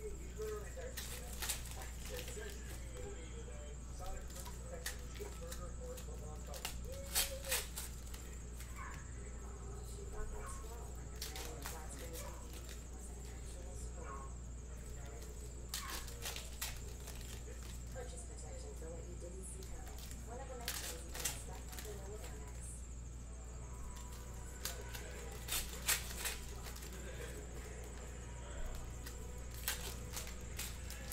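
Foil trading-card pack wrappers crinkling and tearing as packs are ripped open and the cards handled, in short sharp crackles every few seconds over a steady low hum.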